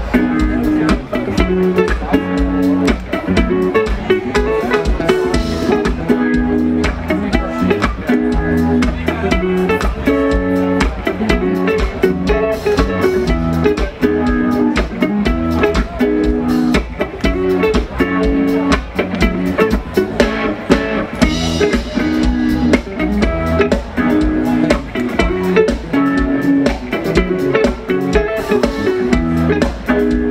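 Four-piece funk band playing live, electric guitars, bass guitar and drum kit in an instrumental jam.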